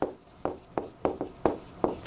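Handwriting on a large touchscreen display: about seven short, irregularly spaced taps and strokes of the writing hand on the screen.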